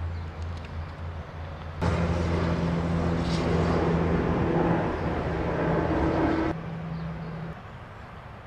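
Outdoor background noise with a steady low hum. About two seconds in, a louder motor-vehicle running sound with several steady tones starts abruptly, then cuts off abruptly after about six seconds.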